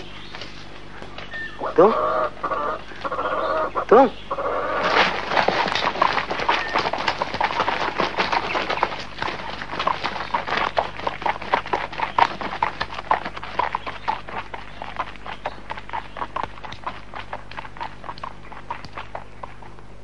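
Horse hooves clip-clopping in a quick run of strikes, starting about five seconds in and fading away before the end. Near the start there is a brief pitched animal call.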